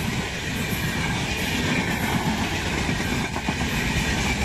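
Running noise of a moving train, a steady rumble.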